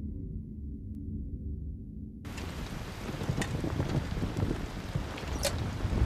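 A low rumbling drone that cuts abruptly, about two seconds in, to a steady hiss of rain with scattered sharp clicks.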